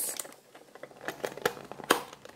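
Thin clear plastic planter cover being handled: a few light clicks and crinkles, with a sharper click near the end.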